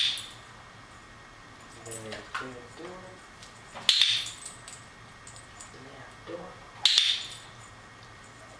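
Dog-training clicker clicked three times, a few seconds apart, each a sharp click with a short ring. Each click marks a small push of the door by the dog, to be rewarded with a treat.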